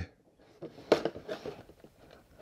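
A folding knife cutting the tape seal on a cardboard box: a few faint scrapes and ticks, with one sharp click just before a second in.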